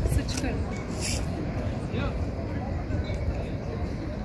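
Indistinct talk in the background over a steady low rumble, with a few short clicks in the first second or so.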